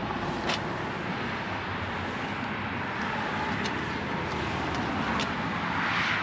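Steady outdoor background noise, like distant traffic, swelling slightly near the end, with a few faint clicks.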